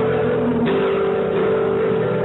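Acoustic guitar strummed in a live song, chords ringing on, with a fresh strum a little over half a second in.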